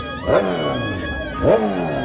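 An engine revved in two sharp throttle blips, about a second apart, each rising fast and falling back, over background music.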